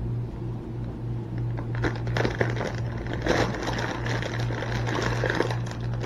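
Plastic produce bag of grapes crinkling and rustling in irregular bursts as a hand reaches in for grapes, starting about two seconds in, over a steady low hum.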